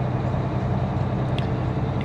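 Engine and road noise inside a moving work vehicle's cab: a steady low drone. A single short click comes about one and a half seconds in.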